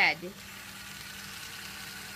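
Steady hum of a small battery-powered toy train's electric motor running on plastic track, with one spoken word at the start.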